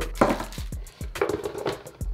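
Packaging and accessories being handled on a table, with a few short, light knocks.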